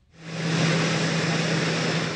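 Jet aircraft engines running, a steady rushing hiss with a low steady hum, fading in over the first half second.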